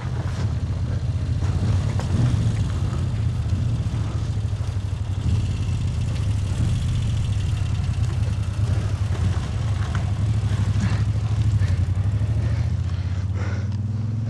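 A motorcycle engine running steadily at a low, even idle, with a few short knocks or scuffs near the end.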